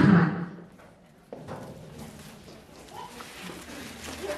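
A voice through a microphone trails off in the first half second. Then comes a quieter stretch of faint background voices, with one sharp knock just over a second in.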